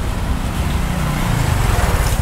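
A motor scooter's small engine running as it rides past close by, over a low rumble of street traffic.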